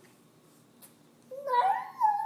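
A toddler's high-pitched drawn-out vocal note, sung or squealed, rising in pitch. It starts about one and a half seconds in.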